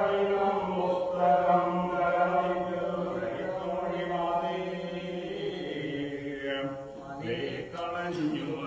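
A group of men and boys chanting a Poorakkali song in unison, in long held notes, with a short break about seven seconds in before the next phrase begins.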